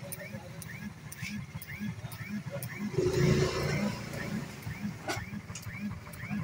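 Motorcycle running slowly through a street, with a faint chirp repeating about three times a second. There is a louder stretch with voices about three seconds in and a sharp knock just after five seconds.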